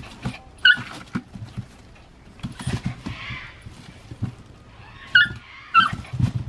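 A small puppy giving a few short, high-pitched yips as it scrabbles in a bin lined with a plastic garbage bag, the plastic rustling and knocking under its paws.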